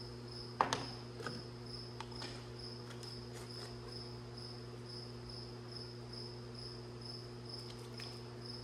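A few sharp plastic clicks, the loudest about half a second in, as a plastic mite-wash jar with a screened lid is handled and opened. Behind them run a steady low hum and a high chirp that repeats evenly a few times a second.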